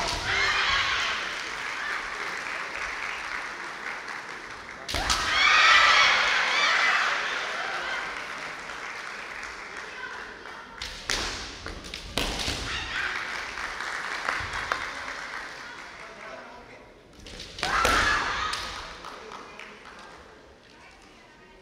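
Kendo fencers shouting kiai as they attack, with sharp cracks of bamboo shinai strikes and stamping feet on the wooden floor, in several exchanges: at the start, the loudest about five seconds in, again around eleven to twelve seconds and near the end. Each shout rings on in the large hall's echo.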